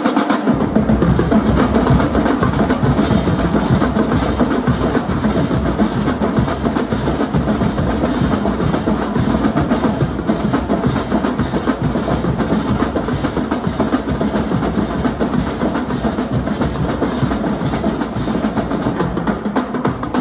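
Marching drumline playing a fast, dense cadence: Pearl marching snare drums with tenor drums, bass drums and hand cymbals. The bass drums come in just after the start, and the playing then runs on without a break.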